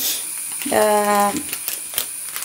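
Sliced onions frying in a kadai with a steady soft sizzle, a few light spatula clicks near the end. A woman's voice holds a drawn-out sound for under a second about halfway through.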